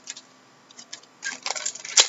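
Trading cards being handled and flipped through by hand. It is quiet for about a second, then comes a quick run of short rustles and clicks, ending in a sharp click.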